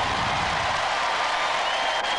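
Studio audience applauding and cheering, a steady dense clapping noise.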